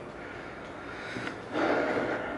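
Quiet room tone in a pause of a man's talk, then a short breathy rush of air about a second and a half in: a breath out through the nose.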